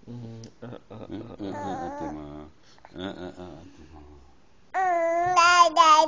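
A baby babbling. From about five seconds in she gives loud, drawn-out vowel sounds in a high voice that rise and fall. Before that, a man's low, soft voice talks.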